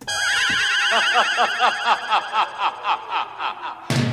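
A high, trilling laugh that breaks into a run of quick ha-ha pulses, about four a second, fading away.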